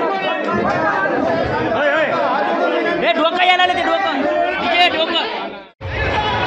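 Crowd chatter: many men talking and calling out over one another. The sound cuts off abruptly near the end.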